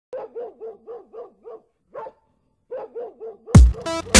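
A quick series of short dog barks, about four a second, with a pause in the middle. An electronic music track comes in loudly with a heavy bass hit near the end.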